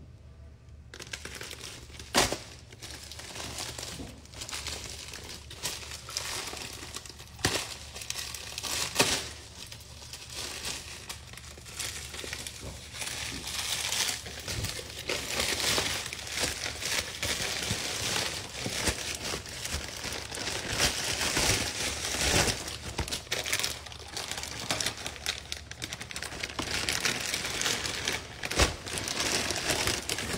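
A plastic bag being handled and crumpled close to the microphone: continuous crinkling and rustling with occasional sharper crackles.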